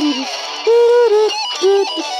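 Singing over a karaoke backing track: a held sung note ends just after the start, and after a short break the voice comes back with a louder, longer note and then a short one.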